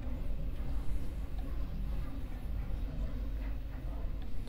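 Faint handling of a stuck stock flat burr in a coffee grinder's burr chamber: fingers rubbing and tugging at the metal burr, with no clear clinks, over a low steady hum.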